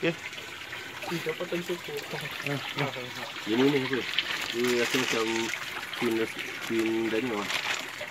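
Shallow creek water trickling and splashing as a dip net is worked through it, with a person's voice talking over it.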